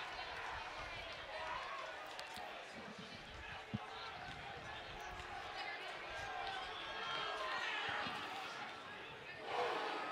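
Faint ballpark ambience: a low murmur of many distant voices from the crowd and dugout, with a single sharp knock about four seconds in.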